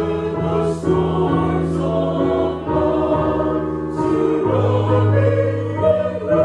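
A choir singing a slow gospel hymn, the line "And when the storms of life surround me", in held notes over sustained low accompaniment.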